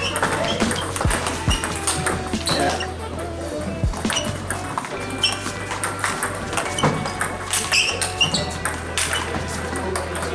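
Music playing over a table tennis rally: the ball clicks repeatedly off bats and table, with voices in the background.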